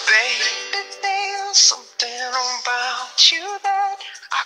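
A pop song with a lead vocal: a sung line over the band's backing.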